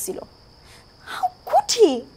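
A woman's tearful, halting voice: two short breathy utterances with falling pitch, one about a second in and one near the end, after a brief pause. A faint steady high-pitched tone runs underneath.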